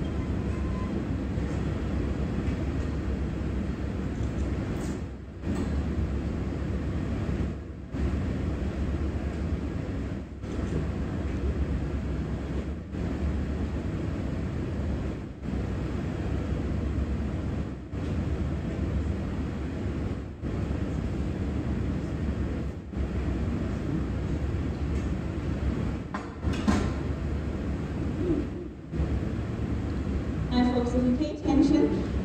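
Steady low roar of a gold-melting furnace, with brief dips about every two and a half seconds.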